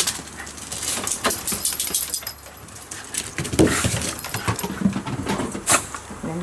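Shiba Inus moving about on a wooden deck: irregular clicks and knocks of paws and collar, with a few brief dog vocal sounds.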